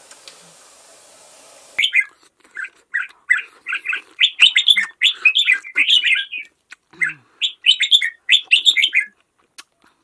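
A steady hiss that cuts off abruptly about two seconds in, giving way to a loud, rapid run of bird chirps in quick clusters that continue until near the end.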